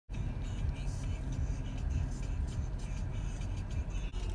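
Steady low rumble of car cabin noise.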